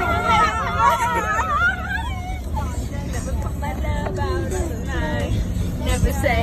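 Two girls laughing and shrieking in high, wavering voices, loudest in the first two seconds and then quieter, over the steady low rumble of a car driving, heard from inside the cabin.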